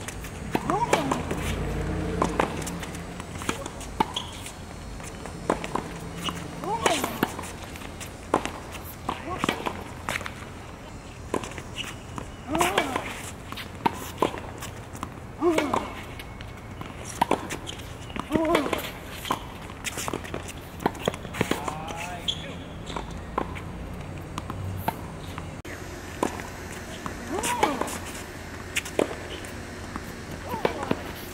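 Tennis rally on a hard court: racket strings striking the ball, the ball bouncing on the court, and players' shoes moving, with a sharp hit every second or two.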